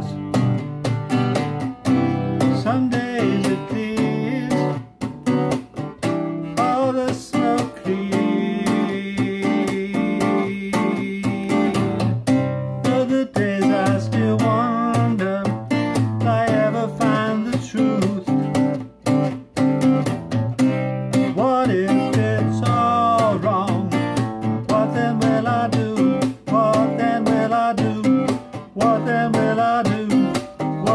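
Guitar played as an instrumental break, a busy run of plucked and strummed notes with some bent notes, on a rough demo recorded live into a microphone.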